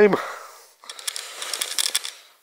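A word trails off, then about a second of light rustling and crackling with small clicks: handling noise as the camera is swung around.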